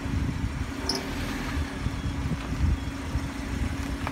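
Road and engine noise of a car in motion, a steady low rumble with a faint steady hum running through it.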